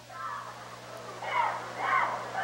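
Gymnasium crowd shouting and cheering, many voices blurred together, swelling about a second in.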